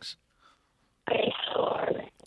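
A caller's voice on a telephone line breaking up into garbled noise, starting about a second in after a near-silent gap: a bad phone connection.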